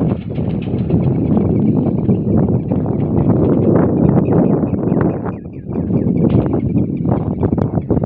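Wind buffeting the phone's microphone in a loud, rough rumble, with irregular footsteps crunching on a gravel embankment.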